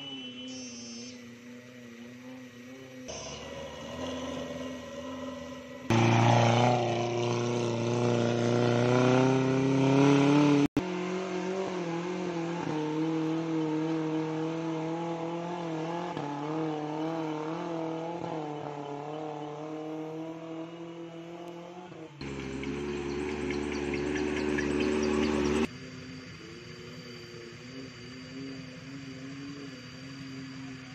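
Suzuki Jimny off-roader's engine working hard up a steep dirt climb, revving with a wavering pitch. It swells loudest for a few seconds at a time, about six seconds in and again past twenty seconds.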